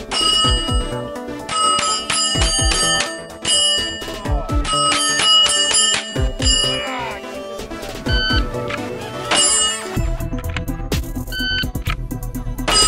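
Strings of gunshots, each hit setting round AR500 steel plates on a plate rack ringing with a bright, bell-like ring, over background music.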